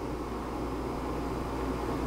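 MSR Pocket Rocket 2 canister gas stove burning with its flame turned down low under a pot of water: a steady hiss of gas, with a steady low hum underneath.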